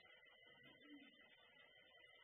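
Near silence: a very faint film soundtrack with a thin, steady high-pitched tone.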